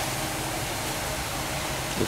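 Steady, even hiss of workshop background noise, with no distinct strokes or knocks.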